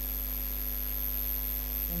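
Steady electrical mains hum with faint hiss and a thin high whine, the noise floor of the narration recording. A voice starts to speak right at the end.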